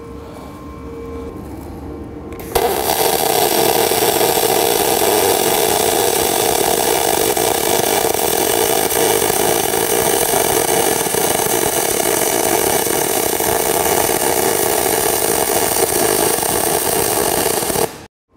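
MIG spool-gun arc welding 10-gauge aluminum with 0.035-inch 4043 wire under 100% argon: a steady, loud sizzling arc that starts abruptly about two and a half seconds in, after a quiet low hum, and cuts off sharply just before the end.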